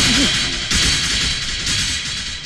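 A film soundtrack sting: a sudden loud crash-like hit that rings on and slowly fades, swelling once more under a second in, with background music.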